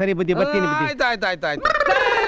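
A man's voice talking fast and excitedly in quick, pitch-jumping bursts. About one and a half seconds in, it ends in a high, strained cry that falls in pitch.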